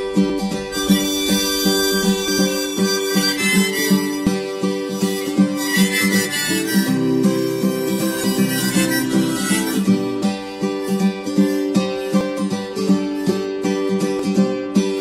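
Instrumental break in a late-1970s Indonesian folk-pop song: a harmonica plays the melody over steadily picked acoustic guitar, with a fuller held accompaniment in the middle of the break.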